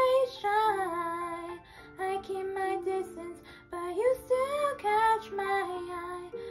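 A girl singing a song over instrumental accompaniment. Her held notes slide up and down in pitch, with two short breaths between phrases.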